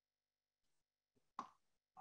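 Near silence between speakers, with one brief faint sound about a second and a half in.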